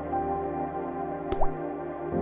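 Soft ambient background music, with a single water-drop sound effect about a second and a half in: a sharp click followed by a short rising blip.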